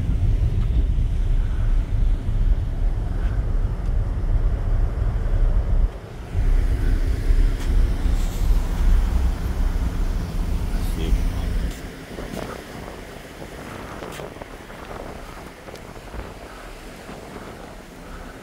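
Wind buffeting the microphone on a moving ferry's open deck, with the ship's engine drone under it. The heavy rumble dips briefly about six seconds in, then drops away to a softer wash of wind and ship noise about twelve seconds in.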